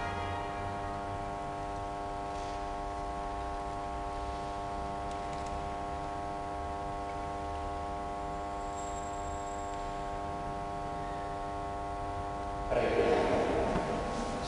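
A chord held steadily on a keyboard instrument, with several notes sounding together and unchanging. Near the end a louder voice comes in.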